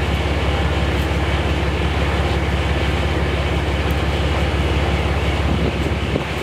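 Steady low rumble with an even hiss above it.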